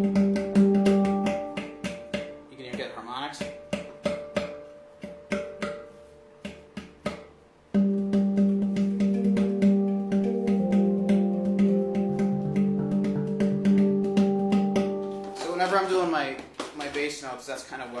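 Handpan played with a low bass note ringing under a quick run of rhythmic taps on the tone fields and rim, the thumb anchored on the rim above the bass. The playing fades to a lull, then a strong bass note is struck about eight seconds in and the rhythm picks up again. A man starts talking near the end.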